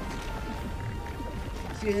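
Anime soundtrack: a deep, steady rumbling effect with a faint held high tone over it, with music, as a magic attack plays out on screen. A man's voice cuts in near the end.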